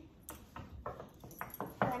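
A handful of short, light taps or clicks, unevenly spaced.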